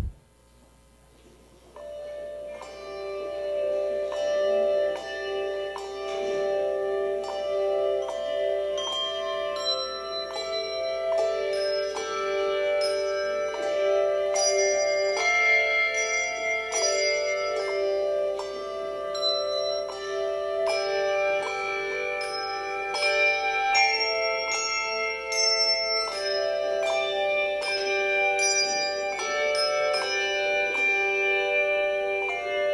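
Handbell choir playing, starting about two seconds in: many handbells struck and left ringing together in chords, with new strikes layered over the sustained tones.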